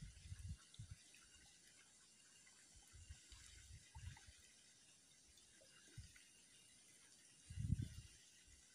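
Near silence, broken by a few faint, short low thumps, the strongest cluster near the end.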